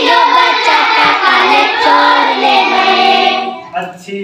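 A large group of children singing a Hindi nursery rhyme together in chorus, fading out near the end.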